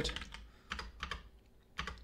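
Computer keyboard keys pressed a handful of times: separate short clicks spread over two seconds, stepping through browser search matches.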